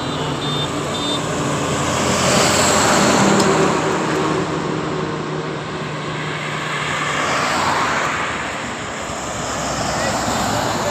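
Highway traffic: heavy vehicles pass close by, with a swell of noise about three seconds in and another near eight seconds, over a steady low diesel engine hum.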